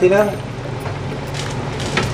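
Pot of soup boiling on the stove, a steady bubbling hiss over a constant low hum, with a few faint ticks near the end. A voice trails off at the very start.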